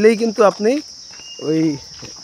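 Steady high-pitched insect drone, an unbroken hiss-like shrilling. A man's voice speaks briefly over it twice, and the voice is louder.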